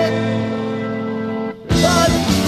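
Early-1970s heavy blues rock recording: a held chord rings on, breaks off for a moment about one and a half seconds in, and the band comes straight back in.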